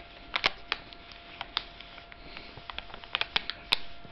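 Plastic bag of cat treats crinkling in irregular sharp crackles as a cat pushes its head around inside it. The loudest crackles come about half a second in and near the end.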